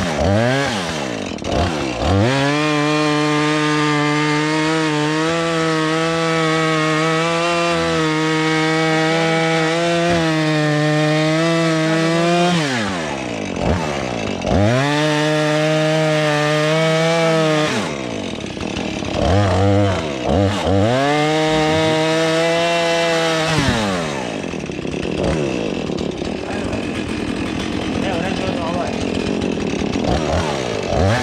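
Two-stroke chainsaw cutting through logs at full throttle. The engine note drops as the throttle is released and rises again for the next cut: one long cut of about ten seconds, then several shorter ones.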